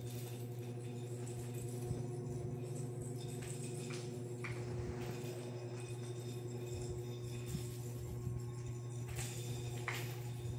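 A steady low hum with a few light jingles and clicks from a small child handling a plastic toy, around four seconds in and again near the end.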